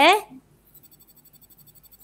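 A short spoken 'eh', then faint, rapid, evenly spaced ticking, about ten ticks a second.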